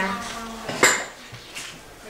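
Toy dishes and play food being handled and set down, with one sharp clink about a second in.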